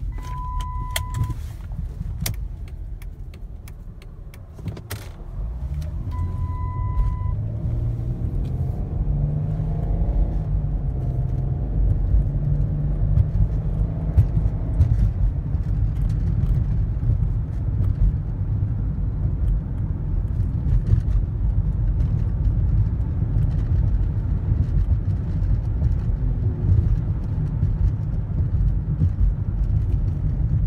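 Inside the cabin of a 2006 Chrysler 300 with a 3.5-litre V6: the seatbelt reminder chime sounds twice, each tone about a second long. The engine and tyres then rumble as the car pulls away, with the engine pitch rising as it accelerates, before settling into steady cruising noise.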